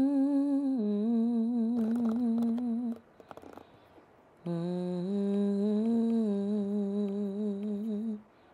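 A woman humming a slow tune in long held notes with a slight waver. The humming stops about three seconds in and picks up again about a second and a half later.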